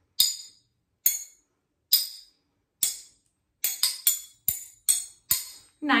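Metal fork and spoon tapped together as rhythm instruments. First come four even taps keeping a steady beat, then a quicker, uneven run of about six taps playing the rhythm of the words 'Oil, chicken broth, black-eyed peas'.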